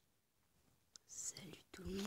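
Near silence for about a second, then a person whispering softly: hissy breathy sounds, and a short voiced syllable near the end.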